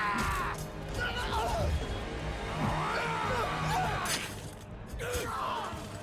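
Film battle soundtrack: men yelling and screaming in close combat over low, sustained score music, with a few sudden impacts, one right at the start and others about four and five seconds in.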